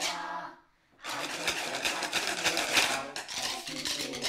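A group of children tapping wooden drumsticks together, a dense clatter of many sticks clicking at once that starts about a second in after a brief lull.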